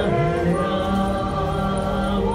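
A small group of voices singing a hymn together in slow, held notes.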